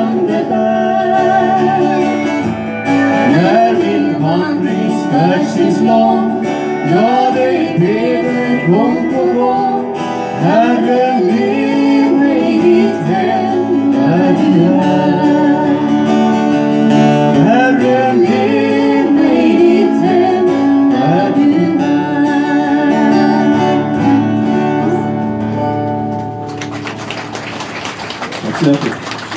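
Live country song with two strummed acoustic guitars and sung vocals. The song ends about a second and a half before the end and is followed by applause.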